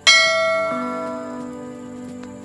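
A bell chime sound effect, struck once and ringing out, fading over about a second and a half, with a lower tone joining about two-thirds of a second in; the ding of the notification-bell click in a subscribe animation.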